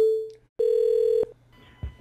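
Telephone line tones as a call is ended and the next call is placed: a sudden beep that fades away within half a second, then a steady, buzzy beep of about two-thirds of a second at the same pitch.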